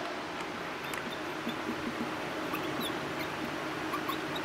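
Whiteboard marker squeaking in short, high strokes as words are written, over a steady room hum.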